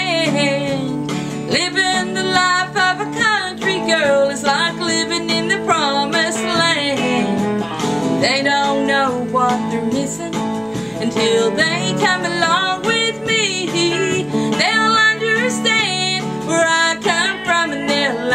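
A woman singing a country-style song over strummed acoustic guitar backing, with long held notes that waver in pitch.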